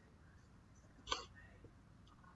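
A single brief sound from a person's throat or mouth, about a second in, over faint room tone.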